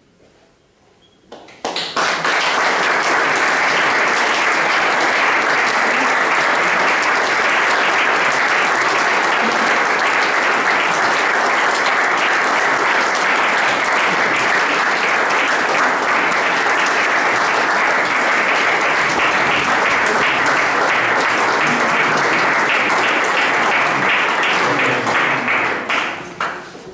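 After a moment of quiet, an audience starts applauding all at once and keeps up steady, dense clapping that begins to die away right at the end.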